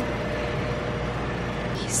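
Steady background hum and hiss of commercial kitchen machinery, with no other event standing out.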